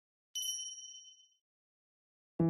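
A single bright chime sounds about a third of a second in, ringing high and fading out over about a second: an editing sound effect marking the switch to the filmed segment.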